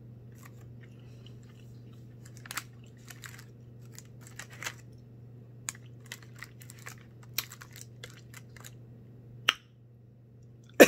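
A person chewing a soft-baked chocolate chip keto cookie: irregular small mouth clicks and smacks, with a sharper click near the end, over a low steady hum.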